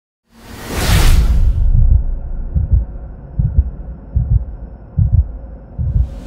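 Intro sound effect: a loud whoosh, then deep heartbeat-like double thumps repeating about every 0.8 s over a low drone.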